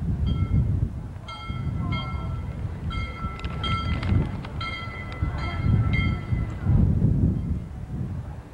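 A horn or whistle giving a string of short blasts at one steady pitch, with gaps between them, over a low rumble.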